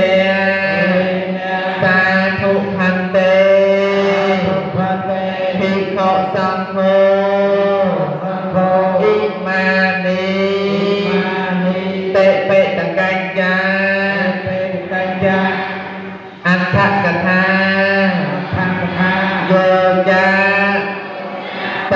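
Khmer Buddhist chanting in long, wavering held notes over a steady low hum, with a short break about sixteen seconds in.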